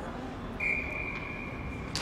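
A single steady, high-pitched tone, held for about a second and a half, over steady background noise in a large hall.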